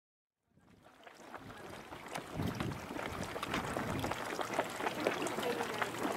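Hot-spring water sloshing and gurgling in a small geyser's crater, with many small splashes. It fades in after a brief silence and grows louder, with faint voices of onlookers near the end.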